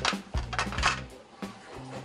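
Background music with a few sharp metallic clinks as the lid of an aluminium pressure cooker is set on the pot and locked shut.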